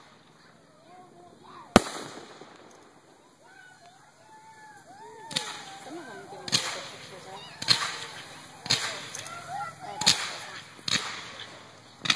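Fireworks going off: one very sharp, loud crack about two seconds in, then, from about five seconds in, a run of sharp cracks about once a second as shots are launched and burst.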